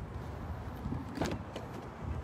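Steady low rumble of outdoor traffic, with a few faint knocks about a second and a half in.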